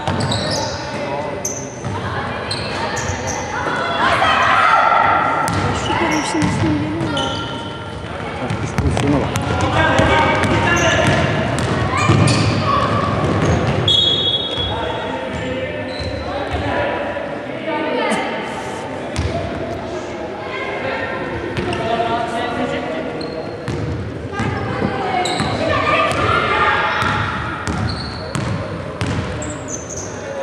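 A basketball bouncing repeatedly on a hardwood court, echoing in a large sports hall, with voices calling out over it.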